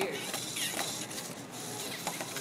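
LEGO NXT robot's motors and plastic gears whirring and clicking as it drives and lunges across a tabletop.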